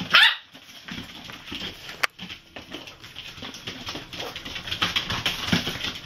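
Puppies play-fighting: one short, loud, high-pitched bark right at the start, then quieter scuffling with a single sharp click about two seconds in.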